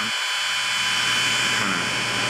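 Milwaukee heat gun running steadily, its fan blowing hot air with an even rush and a faint motor whine as it shrinks heat-shrink tubing over a cable junction.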